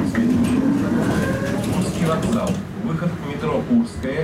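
Indistinct voices of people talking inside a Tatra T3 tram, over the steady low rumble of the tram's interior.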